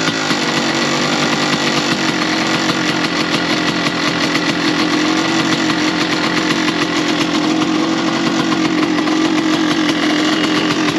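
KTM 300 two-stroke single-cylinder dirt bike engine running steadily, its pitch drifting gently up and down.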